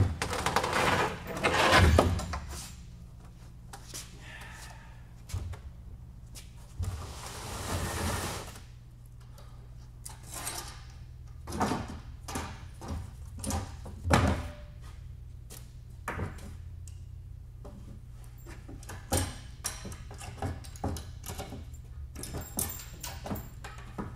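Wooden pallet being taken apart by hand: irregular knocks and thuds of boards and a hammer or pry bar against the wood, with a longer scraping slide of wood about a third of the way in. A steady low hum runs underneath.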